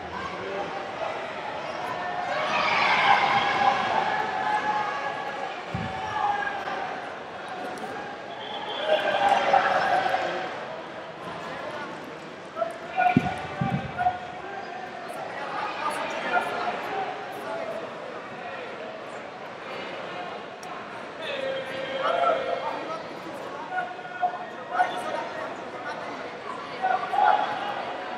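Shouted coaching and calls from coaches and spectators in a large arena hall, coming and going in bursts, with dull thuds of the grapplers' bodies on the mat about six seconds in and again around thirteen to fourteen seconds.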